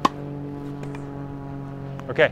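A single sharp crack of a tennis racquet volleying a ball right at the start. Under it runs a steady low hum that holds one pitch throughout.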